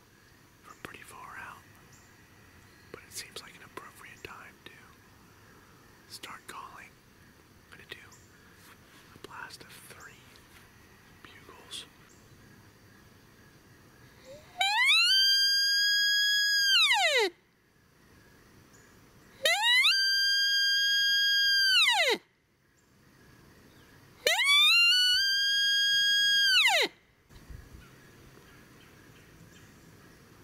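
A mouth-blown hunting call imitating a sika stag's bugle, sounded three times at close range. Each call is loud, lasts about two and a half seconds and comes about five seconds after the last; each sweeps up to a high whistling note, holds it, then drops away.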